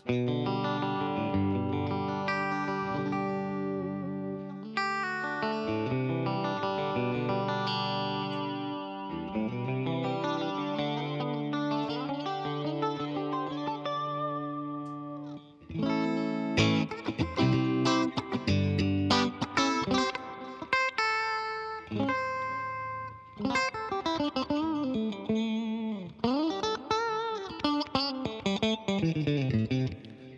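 Electric guitar played clean through an Axe-FX II modelling a Fender Bandmaster amp, with delay and reverb: ringing chords for about fifteen seconds, then a short break and faster picked single notes with string bends.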